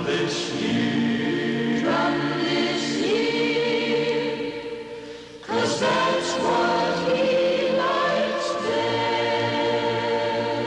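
A choir singing long held notes in harmony. The singing fades about four seconds in and comes back in sharply about a second later.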